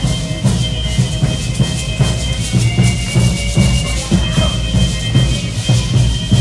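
Live danza de pluma music: a violin holding a high melody over a drum beat, with the dancers' rattles shaking throughout.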